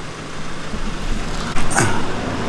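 Low steady hum, then about one and a half seconds in a sudden burst of rustling and knocking as the camera is picked up and handled.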